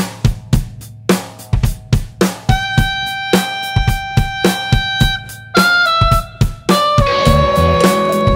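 Intro of a rock song: a drum kit beat, joined about two and a half seconds in by long sustained electric guitar notes, with the band filling out fuller near the end.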